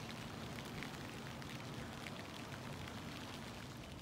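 Faint steady outdoor background hiss, with scattered light ticks.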